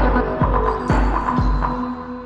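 Deep house music with a four-on-the-floor kick drum about twice a second over a deep bass and held synth tones. The beat stops just before the end, leaving a ringing tone as the track winds down.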